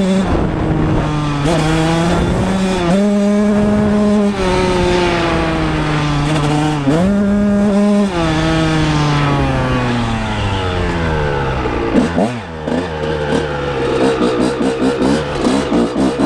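Honda CR125R's 125cc single-cylinder two-stroke engine revving under way, its pitch climbing sharply on the throttle and falling off again several times. Near the end it runs in quick, choppy pulses.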